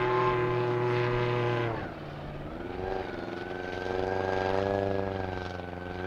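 1.6-class racing hydroplane engine running at high revs. About two seconds in, the pitch falls and the sound drops in level, then it climbs back and holds a steady, slightly rising note.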